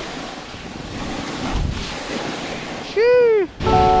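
Wind rushing over the microphone and a snowboard sliding and scraping over soft slushy snow during a downhill run. Near the end comes a short cry whose pitch rises then falls, and music starts just before the end.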